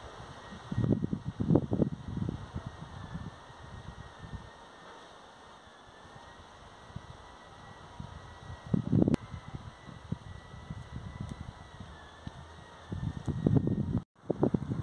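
Outdoor wind buffeting the microphone in irregular low gusts, strongest about a second in, around the middle and near the end, with a faint steady high tone underneath.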